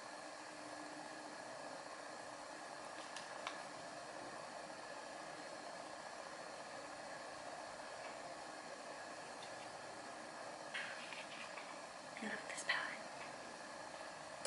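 Low, steady hiss of room tone, with a couple of faint clicks about three seconds in and brief, faint murmurs a few seconds before the end.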